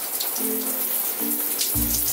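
Shower water spraying and splashing on skin as a face is rinsed, under background music of short repeated low notes with a deep bass hit near the end.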